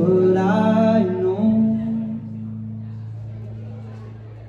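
Live band music: a voice holds a note over a ringing chord from electric guitar and bass guitar, then the chord dies away over the second half, leaving a faint low steady tone.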